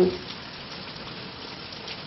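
Pause in speech filled by a steady hiss of background room noise, with the tail of a man's spoken word at the very start.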